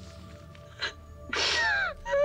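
A young woman crying in fear over soft background music. She makes a short sharp catch of breath a little under a second in, then a loud whimpering sob that falls in pitch.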